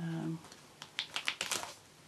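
A brief hum of a woman's voice, then a quick run of about seven short, scratchy strokes of a felt-tip colouring marker nib on paper.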